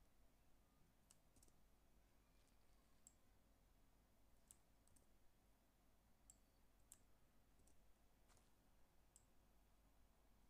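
Near silence broken by faint computer mouse and keyboard clicks, about a dozen at irregular intervals.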